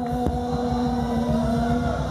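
Live band music, one long note held steadily over a low rhythmic accompaniment.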